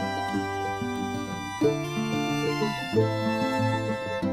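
Instrumental background music, held chords changing every second and a half or so.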